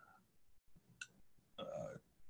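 Near silence over a headset microphone, with a faint click about halfway through and a man's short, low hesitant "uh" near the end.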